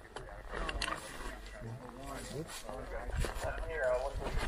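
Quiet, indistinct talking by men's voices, with a steady low rumble underneath.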